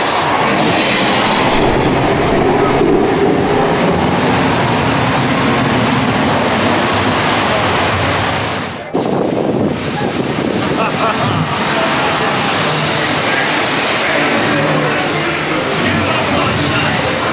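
Steady rush of water around a ride boat in a dark indoor flume, with indistinct voices. The sound dips sharply for a moment about nine seconds in.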